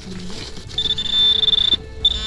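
Handheld metal-detecting pinpointer probing loose soil, sounding a steady high-pitched buzz for about a second in the middle: the alert that metal lies close to its tip.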